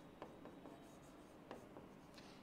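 Faint taps and light scratches of a stylus writing on the glass of an interactive touchscreen board, with a couple of soft clicks: one about a quarter-second in and one about a second and a half in.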